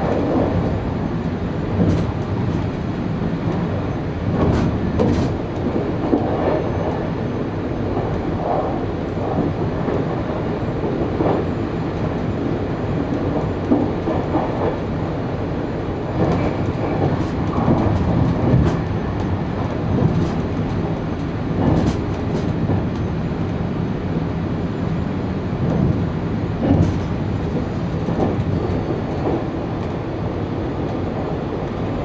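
Electric train running at speed, heard from inside the driver's cab: a steady running rumble with irregular wheel knocks as it crosses points and rail joints.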